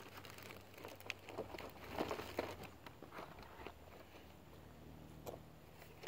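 Faint rustling and shuffling, with a few soft clicks and knocks scattered through: someone moving and handling gear close to the microphone.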